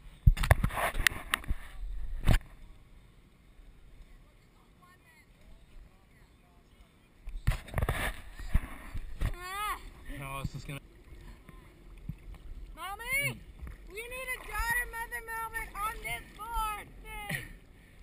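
Water splashing and rushing against a waterproof camera in short loud bursts, then people yelling and shrieking on the water in rising, swooping cries during the second half.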